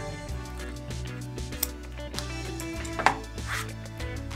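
Scissors snipping through braided fishing line at the knot: two sharp snips about a second and a half apart, the second louder, over background music.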